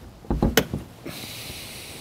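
Front trunk lid of a 2015 Porsche Cayman S being pressed shut by hand: a few soft thumps and a sharp click as the latch catches, about half a second in. A steady hiss follows from about a second in.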